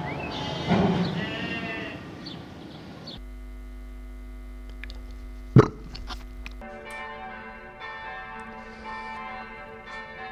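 A sheep bleats about a second in; then church bells ring, a mass of sustained overlapping tones, with one sharp knock about halfway through.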